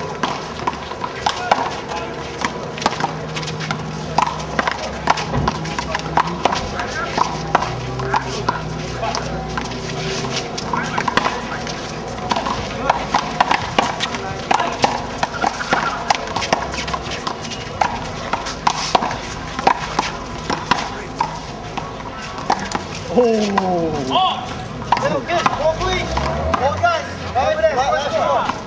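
Bystanders talking over one another, with frequent sharp smacks of a handball being hit and striking the wall during a rally; faint music underneath.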